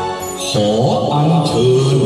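A man's voice begins chanting about half a second in, in a low, wavering voice over accompanying music.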